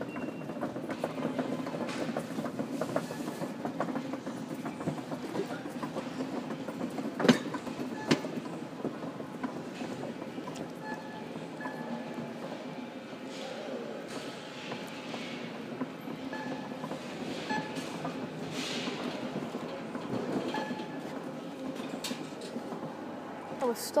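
Shopping trolley wheels rattling steadily as it is pushed across a warehouse floor, with two sharp knocks about seven and eight seconds in.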